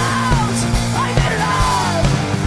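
Punk rock band playing live: electric guitar and a drum kit with a steady kick drum, about four hits a second, under a yelled vocal line that slides in pitch.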